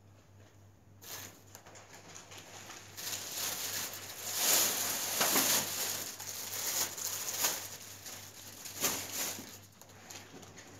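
Plastic grocery bags rustling and packed groceries being handled as a shopping cart is unloaded, in irregular crinkling bursts with small knocks. It starts faint and is loudest around the middle.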